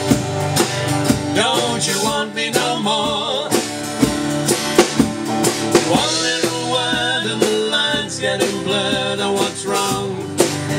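Acoustic guitar strummed in a steady rhythm, with a man singing a melody over it into a microphone.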